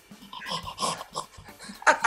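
A man imitating an exhausted dog, panting and whimpering in short breathy bursts that quicken near the end.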